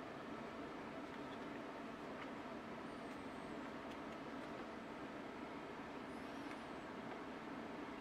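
Faint, steady hiss of room tone with no handling or prying sounds heard; the sound starts and stops abruptly, as if the audio were cut down for this stretch.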